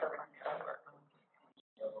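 Low, indistinct conversational speech from people nearby, in short broken phrases with a brief pause and a small click about a second and a half in.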